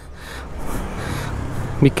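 Road traffic noise on a wet street: a steady low rumble with a hiss that swells and fades in the middle.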